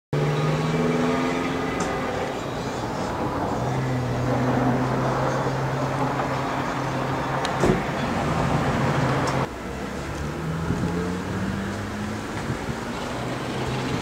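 Outdoor traffic noise with a motor vehicle engine running steadily; a short thump sounds a little before the noise drops abruptly about nine seconds in.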